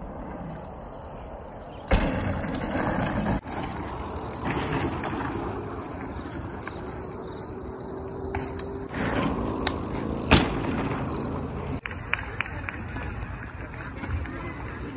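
Bicycle tyres rolling on dirt trails with wind noise on the microphone, the sound changing abruptly several times; a sharp knock about ten seconds in.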